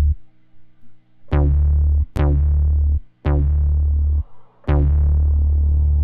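Synth bass notes from the Bass Machine 2.5 rack in Ableton Live, with a second bass layer stacked on the first to add subtle complexity, a little dirt or grit. Four deep notes are played, each starting bright and quickly darkening as a filter closes, the last held about two seconds.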